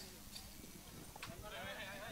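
Faint background voices with a few light knocks, during a lull as hand-held frame drums are picked up and moved.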